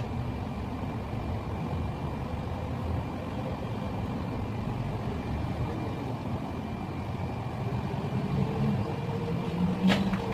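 A steady low rumble, like an engine or traffic, with a faint steady high whine over it; a low hum grows louder over the last couple of seconds.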